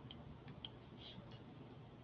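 Faint, scattered light ticks of a stylus writing on a tablet screen, over near-silent room tone.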